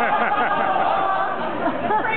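Chatter: several people talking over one another at once.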